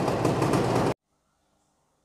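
Yamaha TZM 150's single-cylinder two-stroke engine running steadily close by, then cutting off suddenly about a second in.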